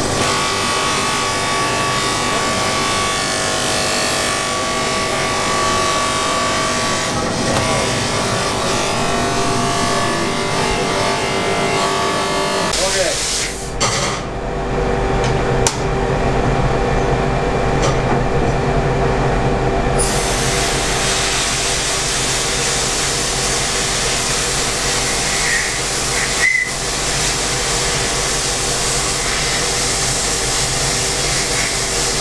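An electric buffing motor runs steadily as a briar pipe bowl is held against its spinning buffing wheel. After a cut, a sandblasting cabinet hums low, and from about two-thirds of the way through the blast nozzle hisses steadily as abrasive is blown at a pipe bowl.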